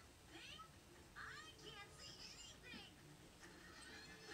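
Faint high-pitched animal calls: a string of short cries that slide up and down in pitch.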